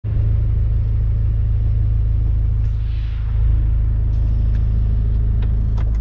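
JCB 526S telehandler's diesel engine running, heard from inside the cab as a steady low rumble.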